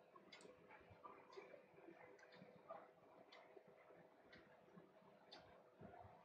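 Near silence: faint room tone with a low steady hum and soft, regular ticks about once a second.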